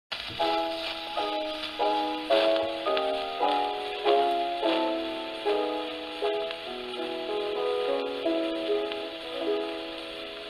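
Piano playing the introduction to a song, a new chord struck about twice a second, heard through the steady hiss and faint crackle of a 78 rpm shellac gramophone record.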